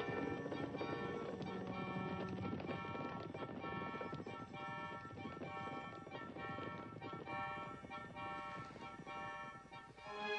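Hoofbeats of a group of ridden horses crossing the ground, heard under film score music, the hoofbeats growing fainter toward the end.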